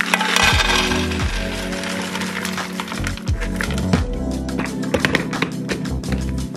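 Background music with a steady beat. Near the start, nuts rattle faintly as they pour into a clear plastic storage container.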